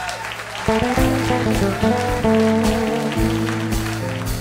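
Live band playing an instrumental passage over audience applause: bass and guitar notes come in strongly under a second in, with cymbal or clapping hiss on top.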